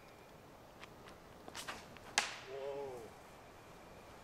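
A disc golf drive from the tee: a few light scuffs of the run-up, then one sharp whip-like snap as the disc is ripped from the hand about two seconds in, loudest of all. A short pitched sound, like a brief grunt or call, follows just after.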